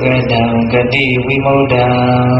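A Buddhist monk's voice chanting in a slow, sing-song recitation, holding each pitch for a moment before stepping to the next.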